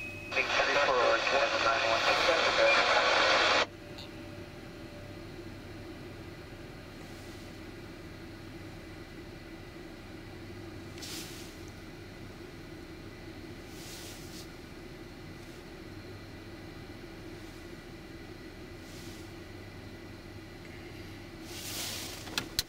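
Air traffic control radio: a loud burst of static from a keyed transmission lasting about three seconds, then the open frequency's steady low hiss with a faint hum until the next call.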